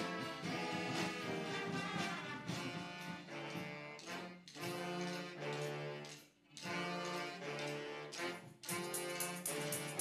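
Live brass band with saxophones, trumpets and a sousaphone playing sustained chords, with brief pauses between phrases, the longest just past the middle.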